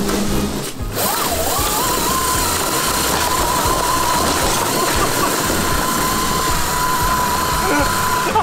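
Electric go-kart motor, a 24,000-watt Electro & Co kit, whining under power as the kart drives in reverse: the pitch rises about a second in and then holds steady. Background music with a low beat runs underneath.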